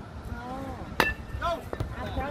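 A metal youth baseball bat hitting a pitched ball about a second in, one sharp ping with a brief ring, followed by spectators' shouts rising right after the hit.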